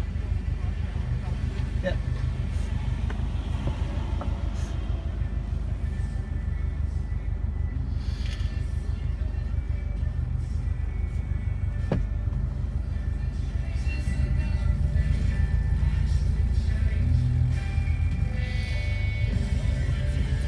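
Low, steady rumble of a 2004 Subaru Forester's flat-four engine idling while the car stands still, heard inside the cabin, with music playing over it. It grows a little louder about two-thirds of the way through.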